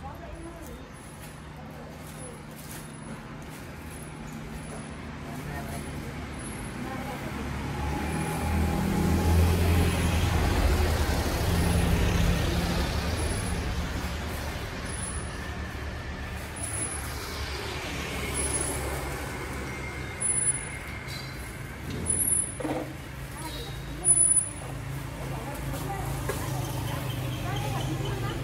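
Road traffic passing on a town street: a heavy vehicle's low engine rumble builds and fades over several seconds in the middle, and a few short, louder sounds come near the end.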